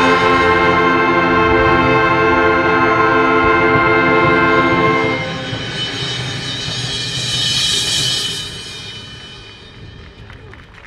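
An instrumental ensemble holding a loud sustained final chord that stops about five seconds in. It is followed by a swell of rushing, hissing noise that peaks and then fades away.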